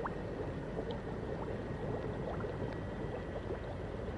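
Underwater bubbling and gurgling over a steady low rumble, with many small quick bubbles rising throughout.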